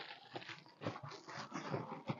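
Faint rustling and light clicks of a cardboard box and plastic-wrapped packaging being handled as an item is lifted out.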